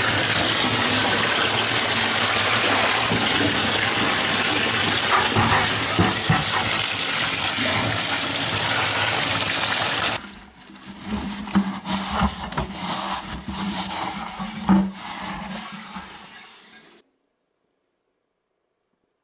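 Water spraying from a bathtub sprayer into a plastic bucket to rinse out dirt, a steady rushing hiss that stops about ten seconds in. Irregular splashing and knocks in the bucket follow for a few seconds.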